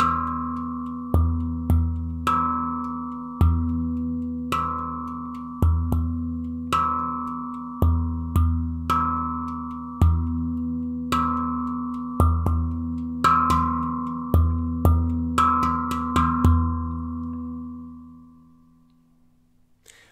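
Handpan played in a steady rhythm of deep bass strikes on the central ding and sharp rimshot accents, the steel ringing on between strokes. The playing stops about three-quarters of the way through and the ring fades away.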